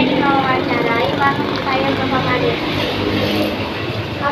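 People talking, with a steady low hum underneath.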